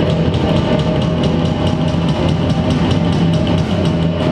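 A live rock band playing: a drum kit keeping a steady beat under electric bass and electric guitar.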